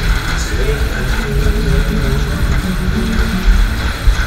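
Loud fairground ride music over the steady low rumble of an SDC Matterhorn ride running at speed, heard from a car on the ride.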